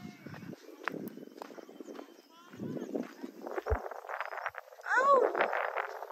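People's voices talking in the background, quiet at first. A louder, high-pitched exclaiming voice comes in near the end.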